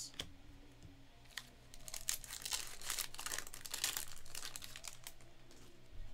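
Foil wrapper of a trading-card pack crinkling and tearing as it is ripped open by hand, a dense run of crackles that is busiest in the middle of the stretch.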